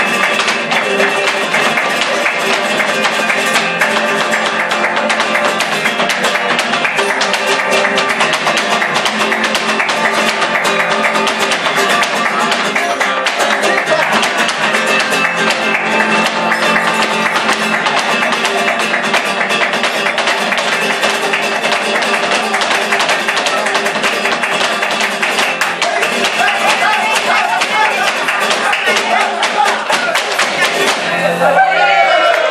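Flamenco guitar playing alegrías, with rapid sharp percussive strikes from a dancer's footwork and hand-clapping throughout.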